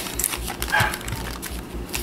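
Stiff clear plastic packaging of a pack of crayons clicking and crackling as it is handled, with a sharp click near the start and another near the end. A brief high-pitched whine sounds about a second in.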